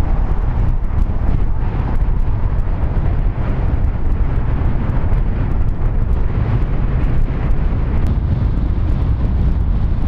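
Strong blizzard wind, sustained at about 40 mph, buffeting the microphone: a loud, steady low rumble.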